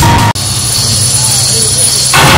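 Edited soundtrack transition: the stage music cuts off abruptly and gives way to a jet-like effect of deep low rumble and a high steady hiss for about a second and a half, before full music with drums comes back near the end.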